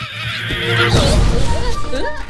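A horse-like whinny over cartoon background music, in a loud, dense stretch of sound that builds up about half a second in.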